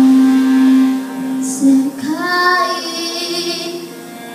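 A young girl singing a ballad into a microphone over piano accompaniment. She holds a long low note, then moves to a higher phrase sung with vibrato that fades near the end.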